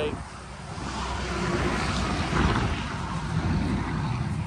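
Strong wind buffeting the microphone: a low rumble with a hiss over it, dipping briefly at the start and then running on unevenly.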